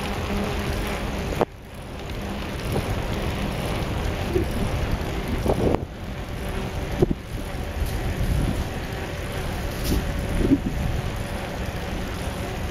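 Wind buffeting the microphone of a camera on a moving bicycle, a heavy, uneven low rumble, with a few brief knocks as the bike rides over the trail.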